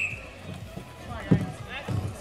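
A referee's whistle cuts off at the very start, then background voices of players on the rink with two short knocks, about a second and a third in and near the end.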